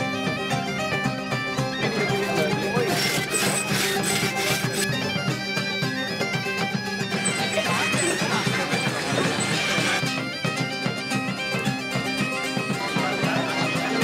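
Medieval bagpipe music: a steady low drone holds under a melody played on the chanter.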